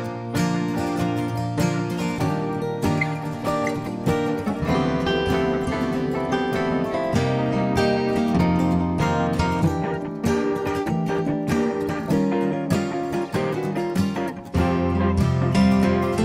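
Instrumental acoustic guitar music, strummed and plucked over a bass line; the sound dips briefly about fourteen seconds in and comes back fuller.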